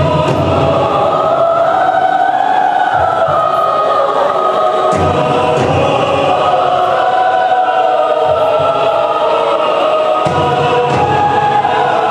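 Recorded choral music with massed voices holding long, slowly shifting notes over a low accompaniment.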